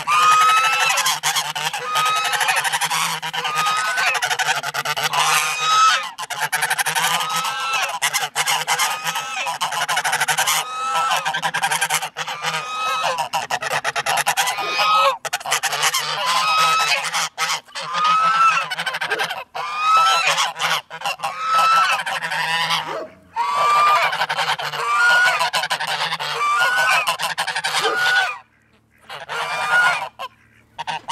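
Several domestic geese honking over and over at close range, short calls that bend slightly upward, one after another almost without a break, with a brief pause near the end.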